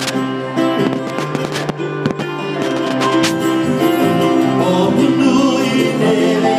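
Live acoustic band music: strummed acoustic guitar, electric guitar and double bass playing together, with sharp strummed chords through the first three seconds and a steadier run of held notes after.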